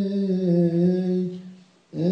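Coptic Orthodox priest chanting into a microphone, one long held note with a gentle waver in the melody. The note dies away about a second and a half in, and after a brief breath pause the voice comes back in at the end.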